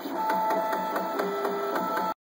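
MakerBot Replicator 5th generation 3D printer running as its print head moves over the build plate: a steady motor whine made of several tones that shift in pitch, with one dropping lower about halfway through, and a quick regular ticking about five times a second.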